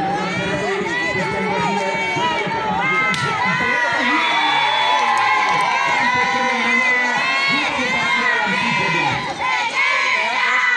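A large crowd of spectators shouting and cheering, many high-pitched voices overlapping, with children's voices among them.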